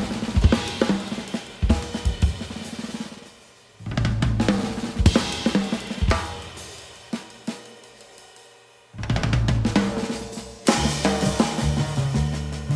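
Jazz drum kit played in short phrases of snare, bass drum and cymbal strikes. Each phrase is left to ring out and die away before the next burst, at about 4 s and again at about 9 s.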